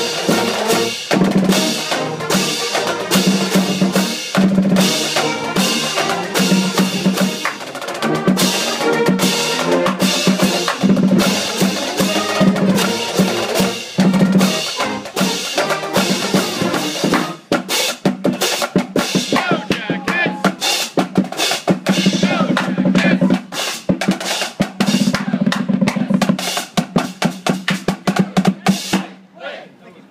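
Brass-and-drums marching band playing: sousaphones, trombones and trumpets over snare drums, bass drum and crash cymbals. In the second half the playing turns choppier, with the drum strokes standing out, and it stops just before the end.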